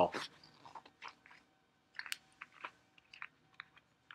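Faint scattered clicks and rustles in a quiet room, with a faint steady hum under them.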